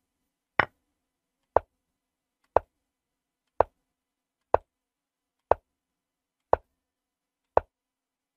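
Chess board software's move sound effect: a short click for each move as the game is played through, about one a second, eight in all.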